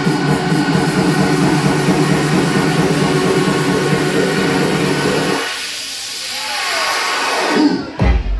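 Electronic dance music played loud in a club, in a build-up: a dense wash of hiss over held steady tones with the bass cut out. About five and a half seconds in the low end sweeps away further, and the heavy bass and beat drop back in right at the end.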